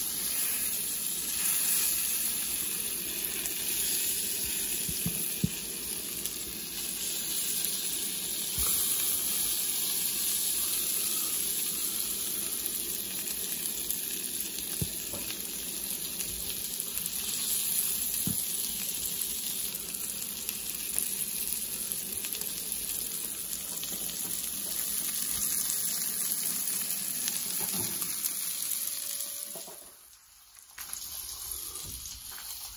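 Hot dogs frying on a flat griddle, a steady sizzle of fat bubbling around them, with a few faint clicks as they are rolled over.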